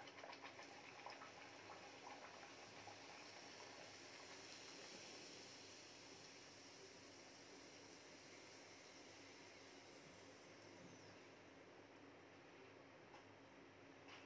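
Faint sizzling of a wheat-flour puri deep-frying in very hot oil in a kadhai. Light crackling in the first couple of seconds settles into a steady soft hiss.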